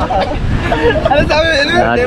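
Several people talking over one another in casual conversation, with a steady low rumble underneath.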